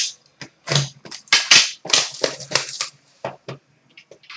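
Plastic shrink wrap on a sealed card box crinkling and tearing as it is cut and pulled off: a quick run of crackles lasting about three seconds.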